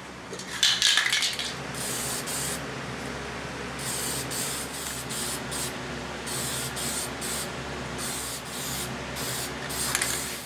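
Aerosol can of sealer spraying onto a freshly stained wooden top in a series of short hissing bursts, the first one the loudest.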